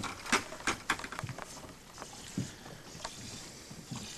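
Scattered clicks and knocks from a boat's floor storage hatch and lid being handled, several in quick succession in the first second and a few more later, over a faint hiss.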